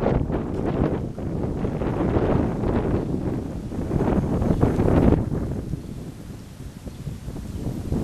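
Wind buffeting the camera's microphone in loud, gusty rumbles that ease off after about five seconds.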